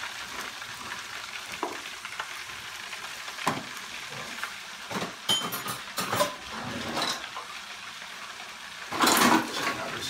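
Steady sizzle of food frying in a pot on the stove, with a few knocks and clatters of kitchen things being handled, and a louder rushing burst near the end.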